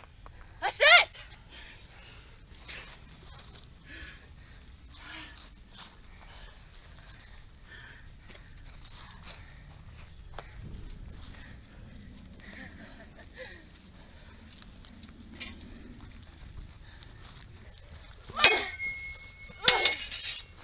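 Steel swords clashing: a loud strike near the end with the blade ringing on one clear tone for about a second, followed by another strike. Before that, a short shout about a second in, then a long quiet stretch.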